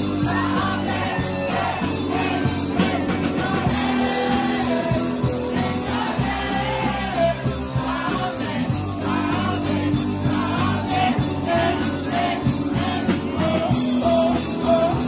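A man singing a rock song into a handheld microphone, backed by a live band, the whole mix amplified through a pub PA.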